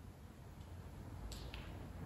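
Quiet room tone with two faint, short clicks about a quarter of a second apart, a little past the middle.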